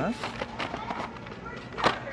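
Plastic blister-carded toy cars being handled and shifted in a cardboard display box, with faint light clicks and one sharp plastic clack near the end.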